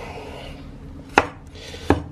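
Knife slicing through a choko (chayote) onto a wooden chopping board, with two sharp knocks of the blade on the board, about a second in and again near the end.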